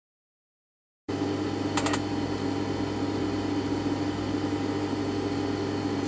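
Steady electric motor hum of an industrial sewing machine running idle, starting about a second in, with a brief few clicks just before two seconds.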